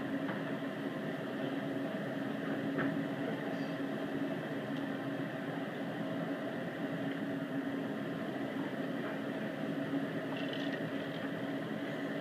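Steady low mechanical hum with a constant droning tone, heard through the general noise of a restaurant dining room; a single faint click about three seconds in.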